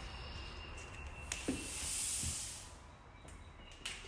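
Front door being opened and walked through: a latch click about a second in, then a soft hiss that swells and fades over about a second and a half.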